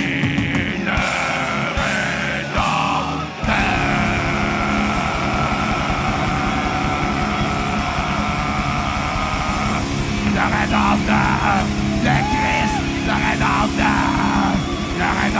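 Heavy metal band playing live. Voices shout and sing over a held chord, then about three and a half seconds in the full band comes in with fast drumming and distorted guitars. Screamed vocals join near the end.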